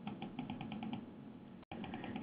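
Faint clicking on a computer: a quick run of about eight short, evenly spaced clicks in the first second. The audio cuts out for an instant near the end.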